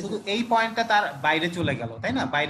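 Speech only: a person talking continuously in a lecture.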